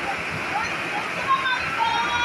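Indoor arena crowd during a volleyball rally: a steady din of many voices, with high-pitched shouts and cheers rising and falling above it.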